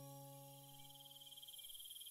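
The last of a sustained piano chord fading away, under a faint steady chirring of crickets from a nature-ambience bed.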